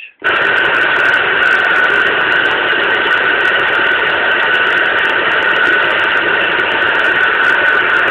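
President Jackson AM/FM-SSB CB transceiver's speaker giving out loud, steady static hiss with a high, steady whistle through it. It starts suddenly just after the start, as the radio receives on channel 30 with no voice coming through.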